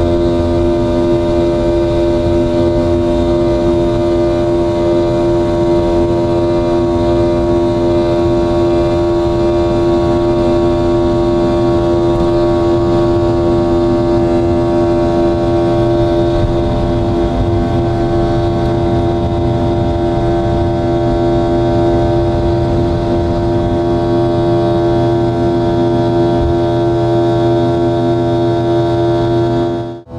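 Boeing 717's rear-mounted Rolls-Royce BR715 turbofan at high thrust during the takeoff roll, heard from a cabin seat beside the engine: a loud, steady drone with a strong hum and many steady whining tones. It cuts off abruptly at the very end.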